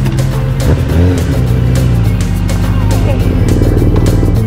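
Background music with a steady beat over a BMW R nineT Urban G/S's boxer-twin engine running as the motorcycle rolls in and pulls up.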